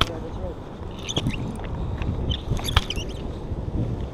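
Handling noise of a body-worn camera rubbing against a shirt, with wind on the microphone and a few sharp knocks.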